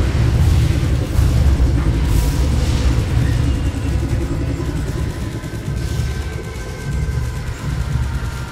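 A loud, deep rumble with a few faint held high tones over it, part of a live concert's instrumental intro played through the arena sound system. It eases off slightly in the second half.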